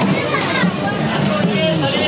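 Voices talking in a busy market, over a steady low background hum.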